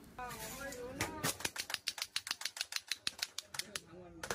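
Rapid, even clacking, about eight knocks a second, from a drink being shaken hard in a glass by hand. A faint voice comes just before the clacking starts.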